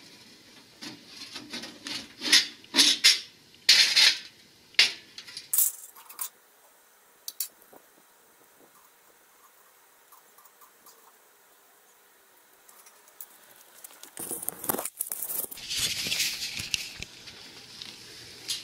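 Light metal clattering and tapping as the sheet-metal front door of a Little Chief electric smoker is worked loose and taken off, over the first five seconds or so. After a quiet stretch, a few seconds of rustling near the end.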